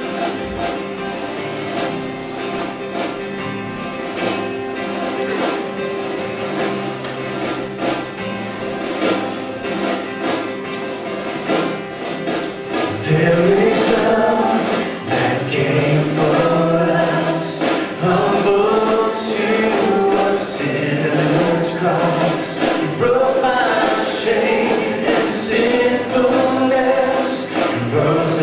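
Live worship band playing a song's instrumental opening on strummed acoustic guitar and keyboard. Singing voices come in about halfway through.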